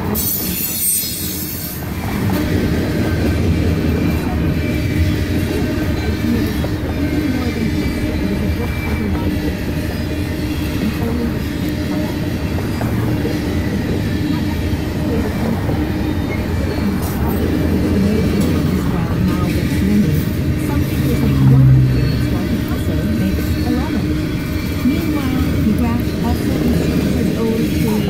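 Freight train of covered hopper cars rolling past a level crossing, a steady rumble of wheels on rails heard from inside a stopped car. A high wheel squeal fades out in the first second or two.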